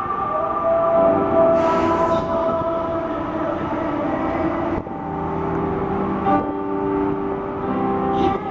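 Live performance of a slow piano ballad: sustained chords and long held sung notes, heard from the crowd, with a brief hiss-like burst about one and a half seconds in.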